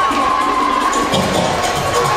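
Music for a dance routine playing under a crowd cheering and children shouting; the music's bass beat drops out briefly and comes back about a second in.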